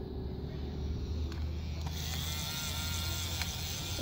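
Small electric motor of a battery-powered toy bubble gun whirring steadily, with a faint higher whine joining about halfway through.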